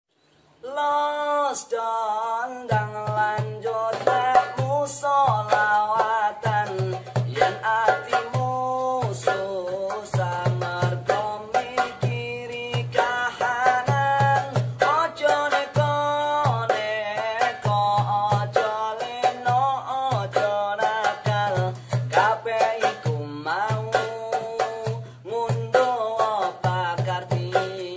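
Javanese shalawat-style song sung by young male voices in harmony, accompanied by acoustic guitar, darbuka and beatbox. The voices open first, and a regular low pulsing beat comes in about three seconds in.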